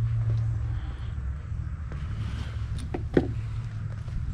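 A steady low hum, with a few light clicks and one sharper click just after three seconds in, as a clear plastic game cartridge case is picked up and handled.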